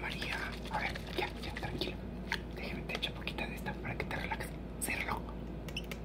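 A woman speaking softly, close to a whisper, with scattered small clicks and taps.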